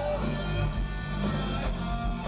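Hard rock band playing live through a festival PA, electric guitar to the fore over bass and drums.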